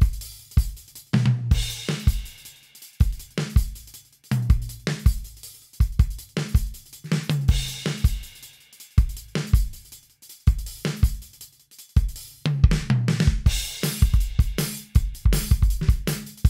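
An R&B-style drum-kit loop at 160 beats per minute in 4/4, played as a metronome backing track: steady kick and snare with hi-hat and cymbals, crash cymbals washing in a little over a second in and again from about twelve seconds.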